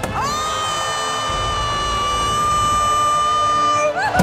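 A singer holds one long, high note for nearly four seconds after a short upward slide into it, over crowd cheering.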